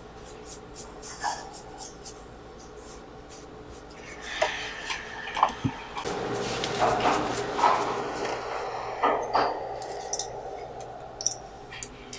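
Small metal pedicure tools clicking and scraping at toenails, in light, scattered ticks. A louder, busier stretch of rustling and clinking runs from about four to ten seconds in.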